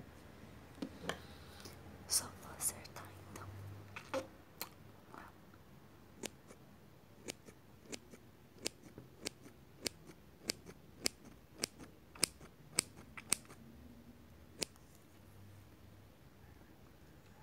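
Hairdressing scissors snipping close to the microphone while trimming a fringe: a few scattered, crisp snips at first, then a steady run of snips a little under two a second that ends near the end.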